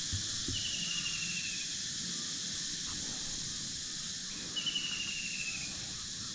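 Outdoor tropical ambience: a steady high insect drone, with two short descending trilling calls about four seconds apart, one about half a second in and one near the end.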